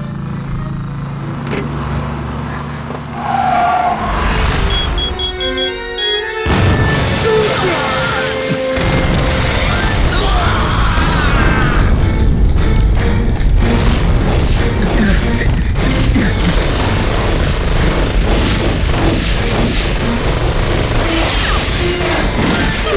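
Film soundtrack of a landmine blowing up under a military truck: a sudden loud explosion about six and a half seconds in, followed by a long stretch of booming, crashing noise, with dramatic music underneath.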